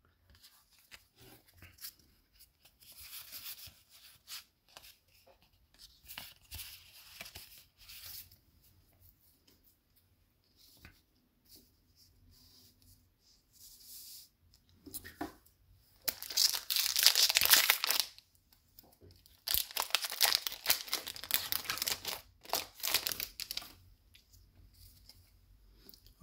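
A foil booster pack wrapper is torn open and crinkled, in two loud stretches of tearing and crumpling, each a couple of seconds long, in the second half. Before that, cards slide and rustle quietly as they are handled and laid down.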